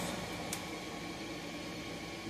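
Steady background hum of a small room, with one faint click about half a second in.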